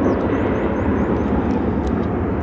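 Jet engines of a Boeing 757 airliner at takeoff power as it climbs out after lift-off: a loud, steady rushing noise, heaviest in the low and middle range.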